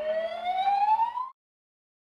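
A cartoon transition sound effect: a single whistle-like tone sliding steadily upward for a little over a second, then cutting off suddenly.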